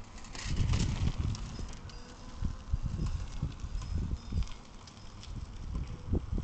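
Mobo Shift recumbent tricycle rolling past on pavement and away: uneven low rumbling in gusts, with scattered light clicks and rattles.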